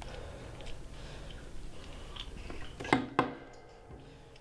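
Small handling noises at a desk, then two sharp knocks about a third of a second apart, roughly three seconds in, each with a short ring.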